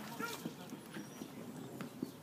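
Faint voices mixed with scattered light knocks and taps, in a fairly quiet field-side ambience.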